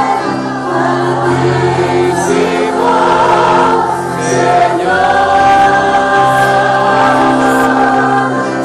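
Christian worship music, with voices singing together over long held chords.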